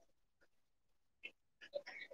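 Near silence: room tone, with a few faint, brief noises about a second in and again near the end.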